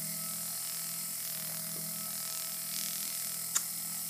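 Foredom flex-shaft rotary tool running steadily with a flap sanding attachment turning against the inside of a sterling silver ring, a constant hum with a light hiss. A single sharp tick comes about three and a half seconds in.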